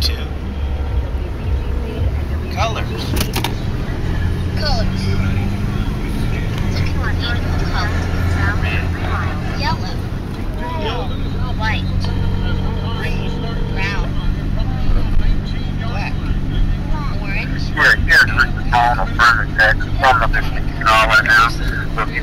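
Car engine and road noise heard from inside the cabin while driving. The engine note rises as the car pulls away a few seconds in, then holds steady. Indistinct voices sound over it, busier near the end.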